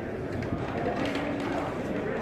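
Indistinct chatter of several voices carrying in a large hall, with a couple of faint clicks.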